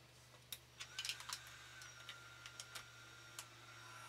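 Faint clicks and knocks of mains plugs and cords being handled and pushed into a plug-in power meter on a power inverter. A low steady electrical hum runs under them, and a faint high whine comes in about a second in.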